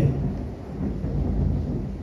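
A low, steady rumble with a faint hiss over it, and no voice.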